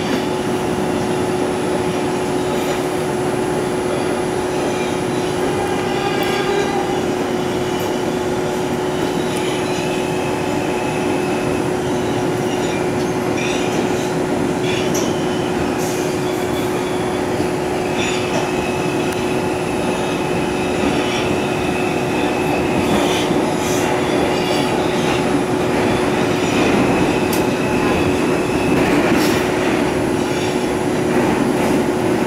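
Bombardier R142 subway car running through a tunnel, heard from inside: a steady rumble with a constant hum, wheels squealing in several stretches, and scattered clicks from wheels over rail joints.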